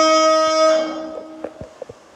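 A man's voice holding one long, steady chanted note of Qur'an recitation, which fades away a little under a second in; a few faint clicks follow near the end.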